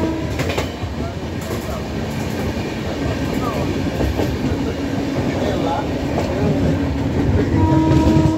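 Moving Indian Railways passenger coach heard from its open doorway: steady wheel-and-rail running noise with clicks as the wheels cross rail joints. A short horn tone sounds near the end.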